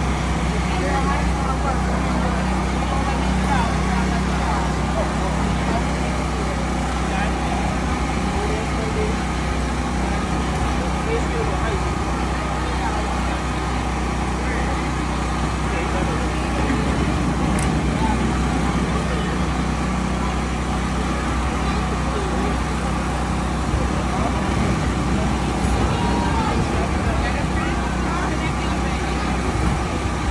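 A steady low motor drone runs throughout, with indistinct chatter of people over it.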